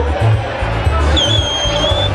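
Loud amplified party music with a heavy, pulsing bass beat over crowd hubbub. About a second in, a single high, shrill whistle holds steady for under a second.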